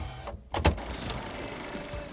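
Sound effect of a VHS tape being loaded into a VCR: a couple of sharp clunks about half a second in, then the tape mechanism's steady whirr and hiss.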